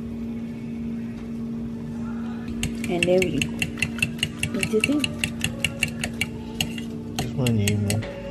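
Fork beating eggs in a glass bowl, clinking against the glass about five times a second from about two and a half seconds in, then more sparsely near the end.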